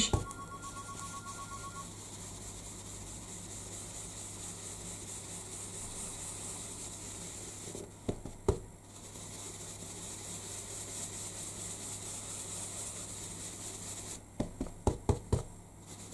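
Stencil brush bristles swirled over card stock: a steady soft brushing hiss. The hiss breaks off briefly with two clicks about eight seconds in, and there is a short run of taps near the end.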